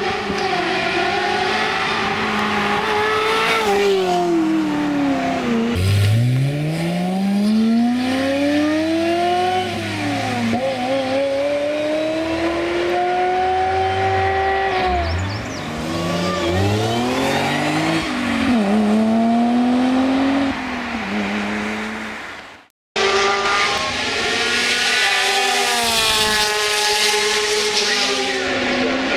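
Ferrari 355 Spider's V8 through a stage-three Capristo exhaust with Fabspeed headers and high-flow catalytic converters, accelerating hard past the microphone several times. The pitch climbs through each gear and drops at the upshifts, then falls away as the car goes by. Near the end the sound cuts out for a moment before the engine is heard again.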